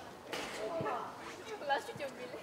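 Voices of players and spectators calling out across a football pitch, with two short sharp knocks, one near the start and one near the end.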